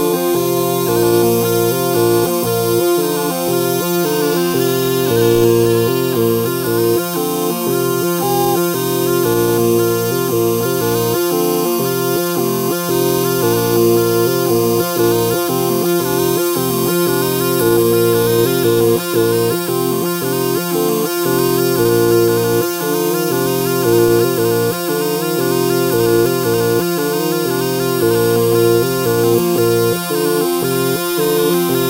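A Trimarco-made five-palmi zampogna a chiave, the southern Italian keyed bagpipe, pitched in B-flat, playing a quick tune that sounds like a tarantella. Steady drones hold underneath while the chanters' melody notes change rapidly.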